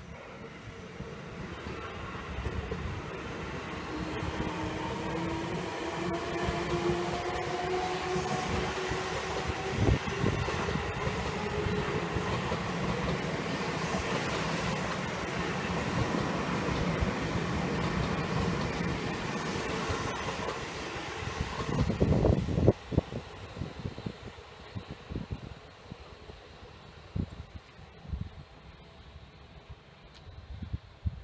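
Seibu 20000 series electric train passing close by. Its traction motors give a whine that rises slowly in pitch over the first ten seconds as the train accelerates, followed by a steady rumble of wheels on rail. A burst of loud clacks comes a little past two-thirds of the way through, as the last cars pass, and then the sound drops away.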